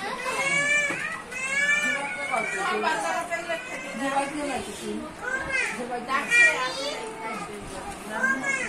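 Lively chatter of several voices, children's high voices among them, talking and calling out over one another.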